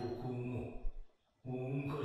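Anime dialogue: a man speaking Japanese in a low, even voice, pausing briefly about a second in before going on.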